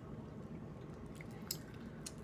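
Faint chewing of BeanBoozled jelly beans, with a small mouth click about one and a half seconds in, over a low steady room hum.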